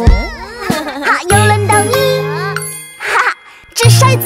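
Cartoon soundtrack of a children's song: a bright chime and a cartoon child's wavering, gliding voice over jingly music with a sustained bass line. A short whoosh comes about three seconds in, and the song's beat starts again near the end.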